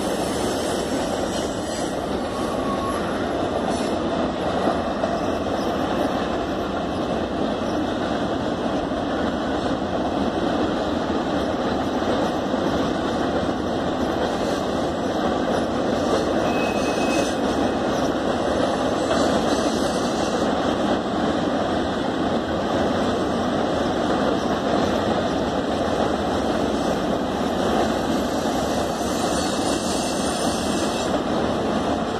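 Norfolk Southern freight train's cars rolling steadily across a long stone arch bridge: a continuous wheel-on-rail rumble that holds level throughout, with no horn.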